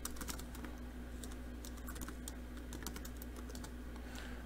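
Computer keyboard being typed on: an irregular run of faint key clicks as a short terminal command is entered, over a steady low hum.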